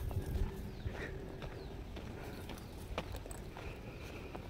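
Irregular footsteps crunching on a dry dirt path, with a low rumble of wind on the microphone.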